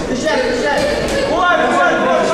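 Men's voices calling out and talking, unclear and overlapping, from around a boxing ring during a bout.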